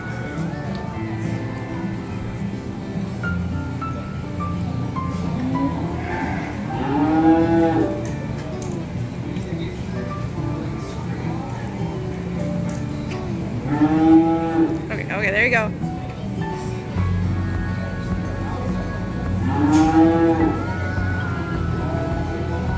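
Beef cattle mooing: three long calls about seven, fourteen and twenty seconds in, each rising and then falling in pitch.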